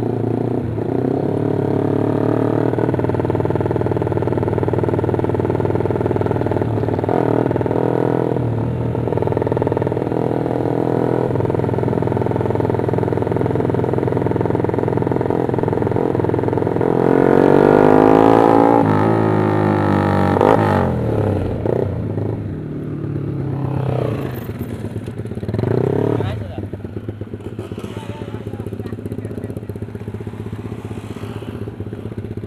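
Motorcycle engine running while riding, steady at first, then louder with the revs rising and falling about two-thirds of the way through, with a couple more swells before easing off near the end.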